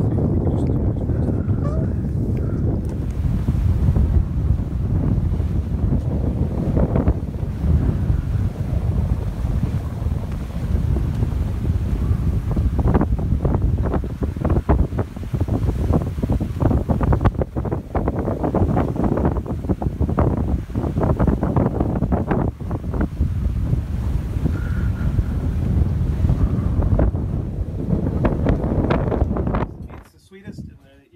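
Wind buffeting the microphone in irregular gusts over the rush of water along the hull and churning wake of a wooden schooner under sail.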